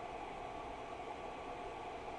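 Steady low hiss of background room tone with no distinct event in it.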